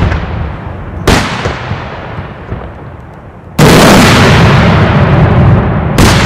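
Daytime fireworks shells bursting overhead. A single sharp bang comes about a second in and dies away; then, about three and a half seconds in, a sudden dense barrage of blasts starts and stays loud.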